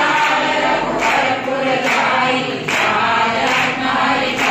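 A group of voices singing a devotional hymn together, with a sharp beat keeping time about once a second.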